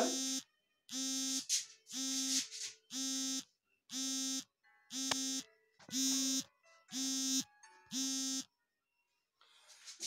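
An electronic buzzer beeping about once a second, nine half-second buzzy tones at one steady pitch, stopping shortly before the end.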